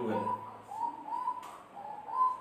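A bird calling over and over in the background, short arched notes repeating about twice a second.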